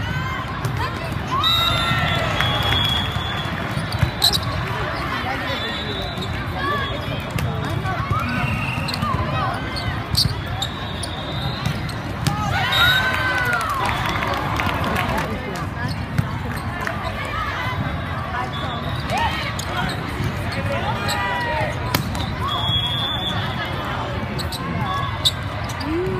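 Indoor volleyball match: the ball is struck in rallies with sharp knocks now and then, over players' shouts and calls and the constant chatter of a crowded hall with many courts in play.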